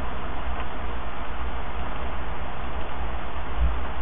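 Steady hiss with a low hum underneath from the recording microphone's background noise, with a brief low bump near the end.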